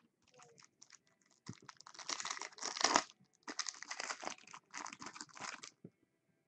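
Foil trading-card pack wrappers crinkling as packs are handled and opened, in two long stretches of crackling broken by a short pause.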